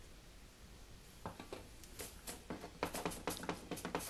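A metal ladle clinking and scraping against a frying pan while cherries in syrup are stirred: a quick, irregular run of light clicks and knocks that starts about a second in.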